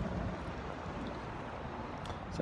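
Wind rumbling on a handheld phone's microphone over steady outdoor background noise.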